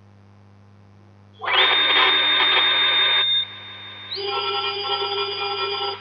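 Synthetic machine sound from the SSCNC CNC simulator as its virtual milling spindle starts and runs. About a second and a half in, a loud noisy whir with a high steady whine begins. It drops back a little after about two seconds, then settles into a steady electronic hum of several held tones with a higher whine on top.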